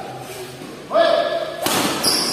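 Badminton rally: a sharp, echoing hit of a racket on the shuttlecock (or a player's foot landing hard) near the end, just after a brief high-pitched held sound.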